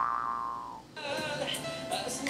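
A held vocal note slides slowly down in pitch and fades away over the first second. Then a band's music from a televised pop performance comes back in.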